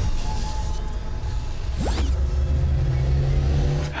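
Eerie trailer sound design: a deep rumbling drone under a few held tones, swelling in the second half, with a quick rising whoosh about two seconds in.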